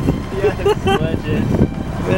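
A person's voice speaking indistinctly, over steady low wind and outdoor noise on the microphone.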